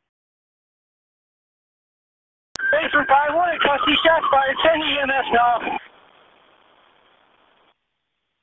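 Police dispatch radio transmission: a click as the channel opens about two and a half seconds in, about three seconds of a voice with a thin, radio-limited sound, then a short hiss of open channel before it cuts off.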